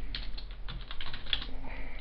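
Computer keyboard being typed on: a quick, uneven run of keystroke clicks.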